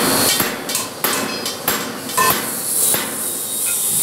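Hand hammer striking stainless steel sheet metal, a series of sharp metallic blows about every half second, each with a short ring.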